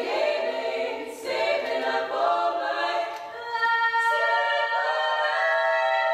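Female barbershop quartet singing a cappella in close four-part harmony: short phrases with brief breaks, then from about four seconds in a long held chord.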